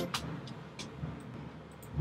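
A short break in the background music: a faint stretch of hiss with a few soft clicks, the music coming back at the very end.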